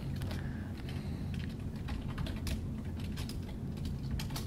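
Typing on a computer keyboard: irregular, closely spaced keystroke clicks with short gaps, over a low steady background hum.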